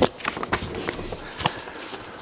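Loose sheets of paper rustling and flapping as they are handled, with a few footsteps; irregular sharp rustles and clicks, the strongest at the very start.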